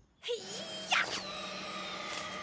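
Cartoon sound effects of a ball being thrown hard: a quick rising whoosh about a second in, then a long, slowly falling whistle as it flies off into the distance, over a soft steady musical drone.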